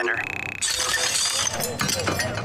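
A crash of something breaking comes in suddenly about half a second in, followed by a clatter of small clinking pieces. It is a sound effect from an animated episode's soundtrack.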